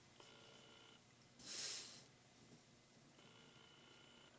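Near silence: room tone with faint steady tones, broken by one brief soft hiss about a second and a half in.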